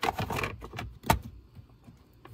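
A cabin air filter's plastic frame scraping and rattling as it is slid into its housing in a 2005 Toyota RAV4's dashboard, then one sharp click about a second in.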